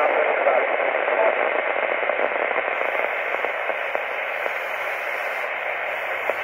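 Steady rushing FM static from a Kenwood TS-480HX transceiver's speaker: the received 10-meter signal has gone to noise as the distant station stops talking. The hiss ebbs slightly, with a faint spoken 'uh' in it.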